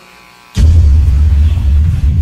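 Electric hair clippers switched on about half a second in and buzzing loudly and steadily close to the microphone, used on a beard.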